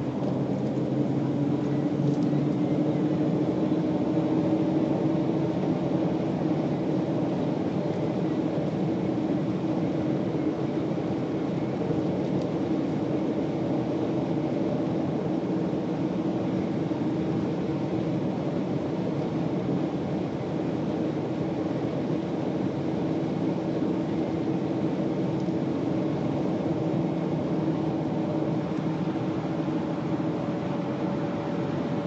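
A Jaguar driving at a steady speed: a continuous engine drone with road and tyre noise. The engine's pitch rises slightly over the first few seconds, then holds steady.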